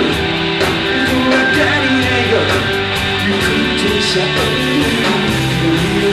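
Live rock band playing a passage without sung words: electric guitar over a drum kit, with regular sharp cymbal and drum hits.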